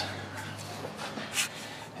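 Faint handling sounds of hands working the rubber hose on an air injection switch valve, with a short hiss about one and a half seconds in.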